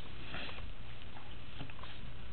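Steady low hum and hiss of room noise, with a soft rustle early on and a few faint light ticks as a small chipboard-and-paper album is handled.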